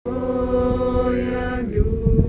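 Mixed voices singing a long held note of a Croatian worship song, moving to a new note near the end.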